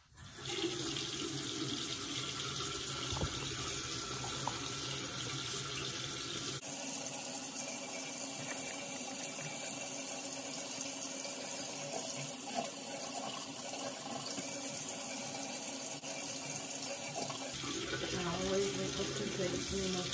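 Bathroom sink tap turned on about half a second in and left running, a steady stream of water splashing into the basin. The tone of the rush shifts once about six and a half seconds in.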